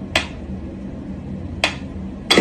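Mechanical pyramid metronome ticking: two sharp clicks about a second and a half apart as its pendulum swings.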